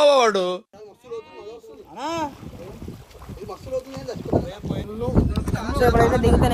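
Men's voices talking in short stretches, over a rough outdoor noise; from about five seconds in, wind buffets the microphone with a low rumble.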